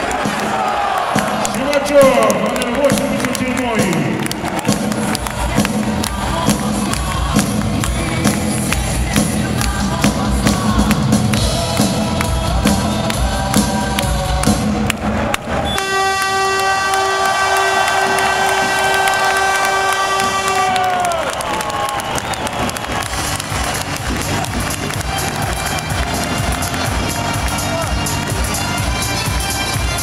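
Ice-hockey arena crowd cheering and shouting over loud music from the arena sound system after the final whistle. About halfway through, a long steady tone with a full, rich sound holds for about five seconds and then slides down in pitch as it ends.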